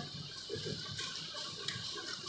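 Scissors cutting paper: a few short, quiet snips.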